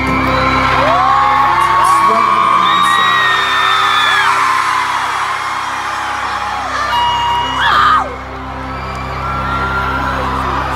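Arena concert crowd screaming and whooping, many high voices rising and falling over one another, over a chord held by the band. A loud close scream swells just before eight seconds in and stops sharply.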